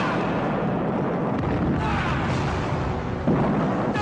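Loud explosions and gunfire in a film soundtrack: a continuous rumble of blasts, with a sharp new blast a little after three seconds in.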